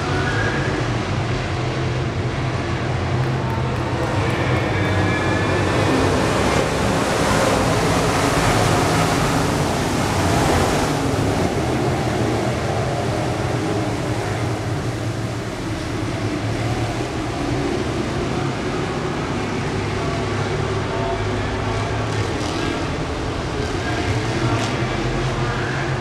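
A field of IMCA Modified dirt-track race cars running at speed around the oval, their V8 engines blending into one steady racket. The sound swells as the pack sweeps past closest, about six to eleven seconds in, then eases as the cars move away down the far side.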